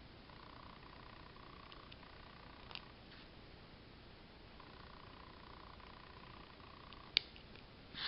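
Quiet handwork on a homemade knitting spool: a fine metal hook lifting yarn loops over paper-clip pegs, with a light click a little before halfway and a sharper click about a second before the end, over a faint hum that comes and goes.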